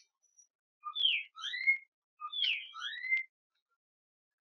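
A bird singing two similar phrases of whistled slurs, one falling and others rising, the second phrase following about a second after the first.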